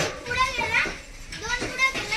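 Children's voices calling and chattering in high-pitched bursts, several voices overlapping.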